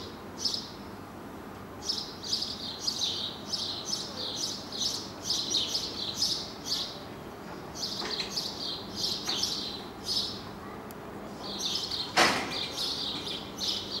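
Birds chirping: many short, quick chirps repeated in clusters, with one sharp knock about twelve seconds in.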